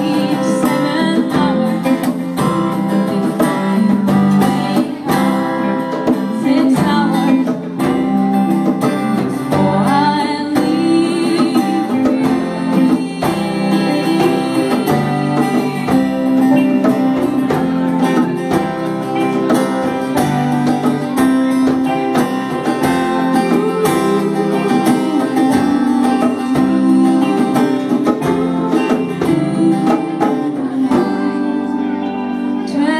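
Live band playing a song: acoustic and electric guitars, keyboard and hand drums, with a woman singing.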